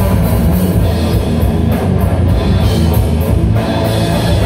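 Live heavy metal band playing loud: distorted electric guitar, bass guitar and drum kit, with cymbals struck in a steady rhythm.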